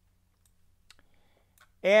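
A few faint, light computer mouse clicks over near-silent room tone, made while choosing menu items to open the export dialog; a man's voice starts near the end.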